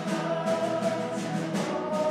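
A Christmas worship song sung by voices over instrumental accompaniment, with held notes and a steady beat.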